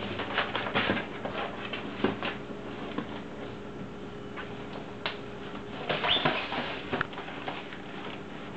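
An empty cardboard box scraping, knocking and rustling on a hard floor as a kitten bats, pushes and crawls into it, in irregular bursts that are busiest near the start and again from about five to six and a half seconds in.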